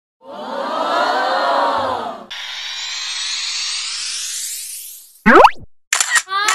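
Edited intro sound effects: a wavering, many-layered sound for about two seconds, then a rising whoosh lasting about three seconds, then a quick upward boing-like glide about five seconds in.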